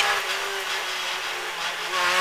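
Rally car's engine heard from inside the cockpit, holding a steady, even note in third gear, a little quieter than the bursts of acceleration either side.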